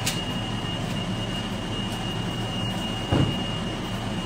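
Steady low hum of a running machine, with a thin high whine held over it, and a soft thump about three seconds in.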